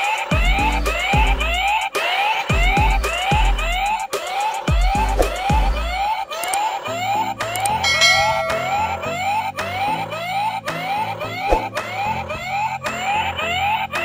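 Electronic siren alarm of a toy keypad coin bank safe: a rising whoop repeating about two or three times a second, the alarm the safe sounds after a wrong password is entered three times. Background music with a heavy beat plays under it, and a short beep sounds about 8 seconds in.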